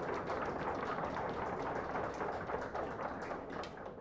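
Lecture-hall audience applauding in a dense patter of many hands, dying away at the end.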